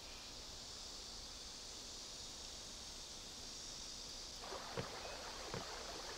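Faint steady chirring of insects in grass, then from about four seconds in, gentle lapping water at a river's edge with a few small splashes.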